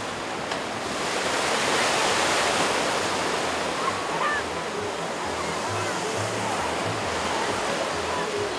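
Steady rushing and churning of water pouring through an artificial boogie-board surf wave, swelling a little in the first couple of seconds.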